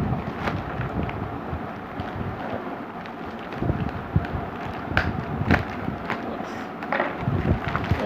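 Plastic courier mailer bag crinkling and rustling as it is handled and cut open with a knife, with irregular sharp crackles, the loudest about five seconds in.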